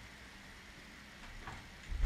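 A pause in the speech: faint steady background hiss of the recording's room tone, with a faint brief sound about one and a half seconds in.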